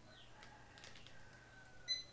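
Barcode scanner giving one short, high beep near the end, the sign of a successful read of a product barcode.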